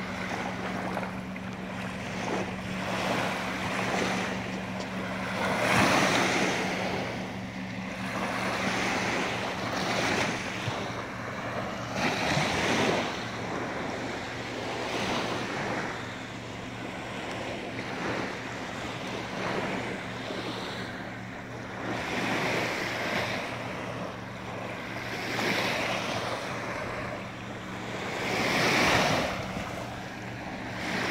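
Small waves breaking and washing up onto a sandy lakeshore, each surge rising and falling every few seconds, with wind on the microphone. A faint steady low hum runs underneath.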